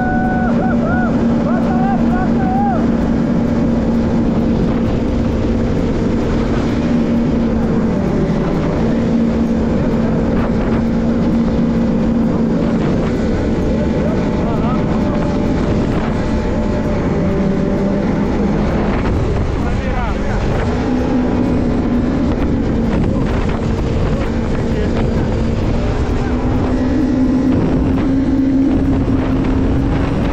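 Jet ski engine running steadily under way, with water and wind noise over it. The engine note dips briefly a couple of times and climbs a little near the end.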